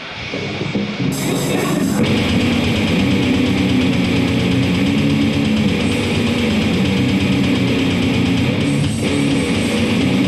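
Electric guitar played loud. It comes in softly, then breaks into a dense, steady riff about a second in that keeps going.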